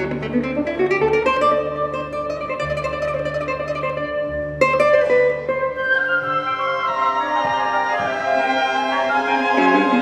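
Nylon-string classical guitar playing a concerto passage with a string orchestra. Quick runs climb in pitch, a loud strummed chord comes about halfway, and cellos and double bass hold low notes underneath through the first half. The orchestral strings grow fuller near the end.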